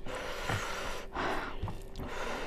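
A person breathing out softly, a couple of breaths, the clearest a little past one second in, with faint sounds of a hand mixing rice on a plate.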